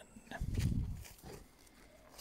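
A dog sniffing close to the microphone, a short run of rough breaths lasting about a second.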